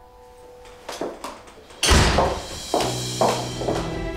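Dramatic drama-series background music: a couple of light taps, then a sudden loud thud about two seconds in, after which steady held music tones carry on.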